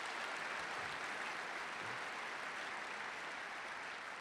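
A large audience applauding, a steady dense clapping that eases slightly near the end.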